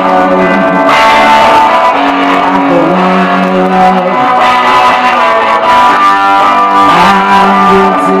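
Electric guitar played live without vocals: chords strummed and left to ring, changing every few seconds.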